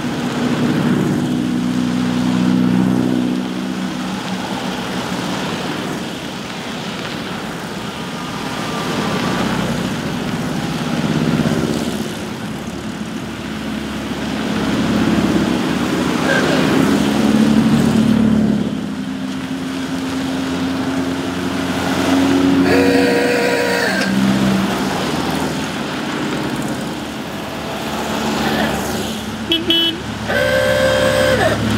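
A procession of air-cooled Volkswagen Beetles and Transporter buses driving past one after another. Their flat-four engines swell and fade as each car passes. A car horn toots about three-quarters of the way through.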